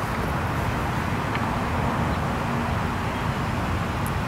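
Steady outdoor background noise: an even hiss over a low rumble, typical of distant road traffic.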